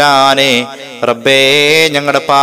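A man's voice intoning a supplication (dua) in a chanted, melodic style: two long held phrases with a short break about halfway.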